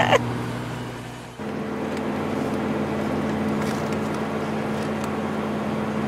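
Steady engine and road hum heard from inside a moving vehicle's cabin. It fades down over the first second, then comes back at a different steady pitch and holds.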